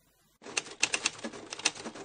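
Typewriter sound effect: a fast run of sharp key clacks, about four or five a second, starting about half a second in.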